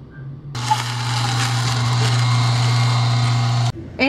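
Electric juicer motor running steadily with a low hum and a high hiss, juicing kale, celery, cucumber, apple, lemon and ginger. It starts about half a second in and cuts off sharply just before the end.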